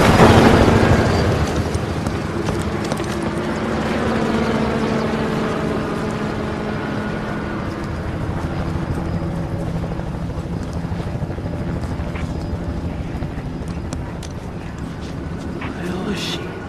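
Film sound mix of a police helicopter hovering overhead, its rotor running steadily under a held low drone; loudest right at the start, then slowly fading.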